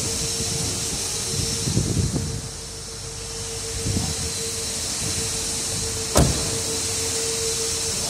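A steady high-pitched hum with hiss, soft rustling handling noises, and one sharp thump about six seconds in, a car door being shut.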